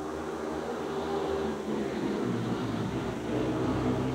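Several speedway bikes racing together, their single-cylinder engines making a steady, overlapping mix of engine notes that grows slightly louder toward the end.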